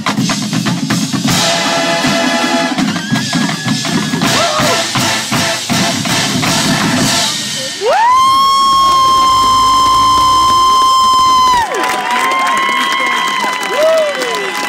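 Drum and bugle corps brass and drums playing the end of a show, with crowd noise. About eight seconds in, a loud whistle rises and holds one high note for about four seconds, then shorter whistles over cheering.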